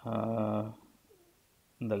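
A man's drawn-out hesitation sound, an "uhh" held at one steady low pitch for under a second, then speech begins near the end.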